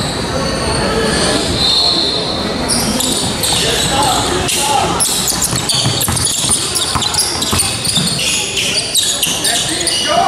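Basketball bouncing on a hardwood gym floor during live play, with sneakers squeaking in quick short chirps, over indistinct voices of players and spectators echoing in the hall.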